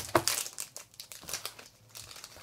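Crinkly inner wrapper of a Pocky Midi snack pack being pulled open by hand, crackling irregularly, busiest in the first second and then thinning out.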